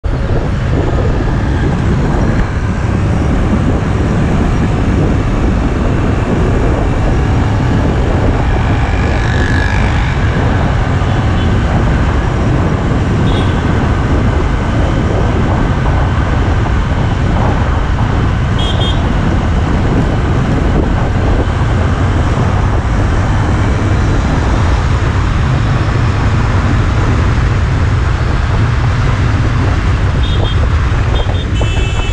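Steady rush of wind and road noise on a GoPro carried on a moving two-wheeler, a dense low rumble with engine and traffic noise mixed in.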